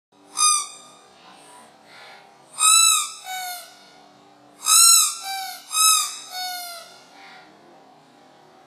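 Rubber squeaky duck toy squeezed by hand: four loud, high squeaks, each rising and then falling in pitch. The last three are each followed by a softer, lower squeak.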